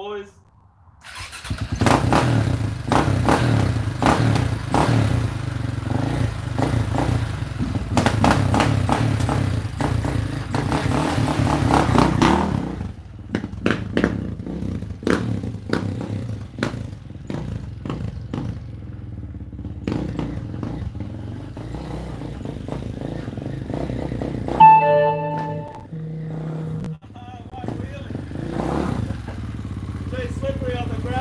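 KTM supermoto motorcycle engine starting about a second in and revving hard close by for about eleven seconds, then quieter and distant as the bike rides away, growing louder again near the end as it returns. A brief loud tone stands out about 25 seconds in.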